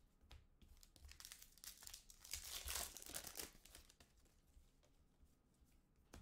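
Trading-card pack and cards handled by hand: faint crinkling and rustling of wrapper and card stock, busiest in the middle seconds and dying away near the end.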